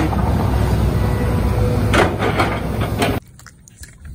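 Hitachi hydraulic excavator's diesel engine running loudly as it digs dirt and stones, with a few knocks about two seconds in. It cuts off abruptly about three seconds in, giving way to faint running water.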